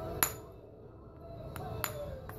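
Sharp clicks of flakes snapping off a stone pommel under a copper flintknapping punch: one loud click just after the start and two fainter ones near the end.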